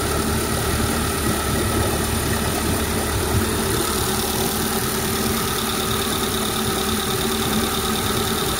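Suzuki 70 hp fuel-injected four-stroke outboard running steadily, its cowling off and the powerhead exposed.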